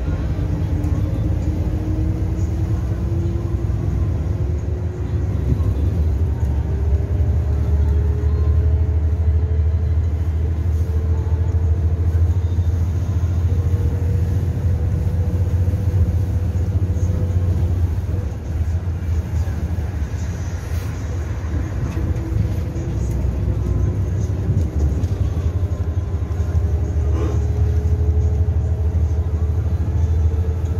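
Cabin sound of a natural-gas (CNG) city bus under way: a steady low engine rumble with a thin whine that climbs slowly in pitch as the bus gathers speed, falls back and dips in loudness a little past halfway, then climbs again.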